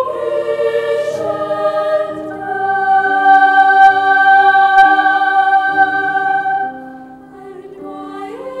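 Boys' choir of treble voices singing slow, held chords that swell to their loudest in the middle, then fade away near the end as the phrase closes.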